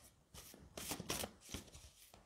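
A deck of cards shuffled overhand by hand: a quick run of short, soft papery flicks as cards are pulled off the pack.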